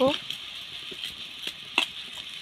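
Dal simmering in a steel kadhai over a wood fire: a steady soft hiss with a few scattered sharp clicks, the loudest just before the end.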